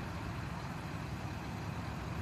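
Steady low rumble of vehicle engines running at a road scene.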